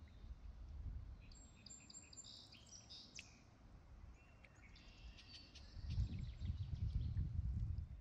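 Small birds chirping and trilling in the wetland, in two spells of high, short calls. A low rumble rises underneath from about six seconds in and is the loudest part near the end.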